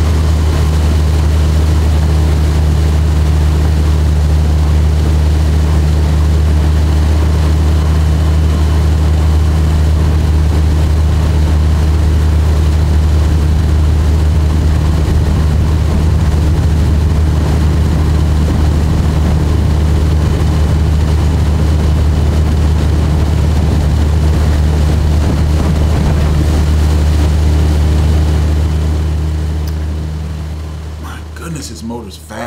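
Tohatsu 20 hp four-stroke outboard, a two-cylinder, running steadily with the boat under way at speed: a constant low drone over the rush of water from the wake. The sound fades near the end.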